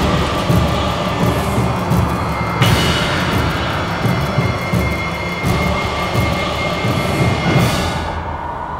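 Dramatic background music score, loud and dense, with deep repeated beats and sweeping swells: one at the start, one about two and a half seconds in and one near the end.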